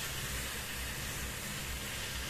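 Jackfruit curry sizzling steadily in a kadhai over a gas flame: an even, continuous hiss.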